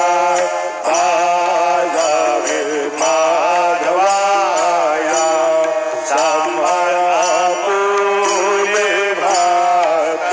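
Hindu devotional aarti song: voices singing a chanted melody over a steady drone, with bells ringing in a regular beat.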